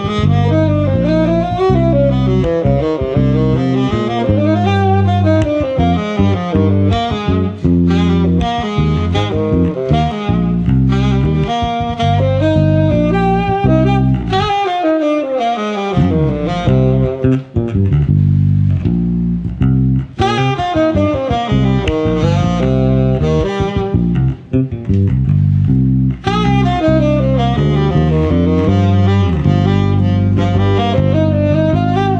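Tenor saxophone and electric bass playing a slow duet: the saxophone carries a melody that slides up and down over a low bass line. About halfway through, the bass stops for a second or so while the saxophone plays on alone.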